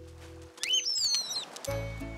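A small cartoon bird chirping: a quick run of whistled chirps that slide up and down in pitch, lasting about a second, in a short gap in the background music.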